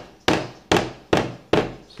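Rubber mallet tapping a new plastic hinge dowel into its hole in a wooden kitchen cabinet door: four strikes, about two a second.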